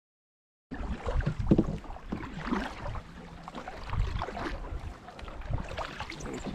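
Silence for under a second, then the sound cuts in abruptly: canoes being paddled on open water, with paddle strokes and water washing along the hulls, and wind buffeting the microphone.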